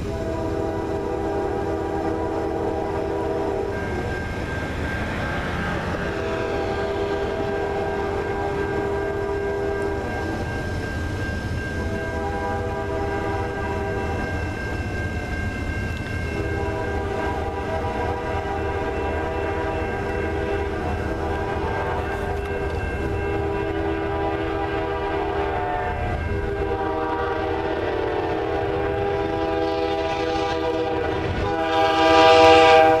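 Canadian National freight locomotive's air horn sounding in repeated long blasts with short breaks as the train approaches a road crossing. The steady rumble of the moving train runs underneath.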